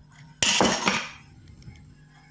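A screwdriver prying a spring-steel retaining clip off the metal housing of a floodlight: one sharp metallic scrape and clatter about half a second in, dying away over the next half second.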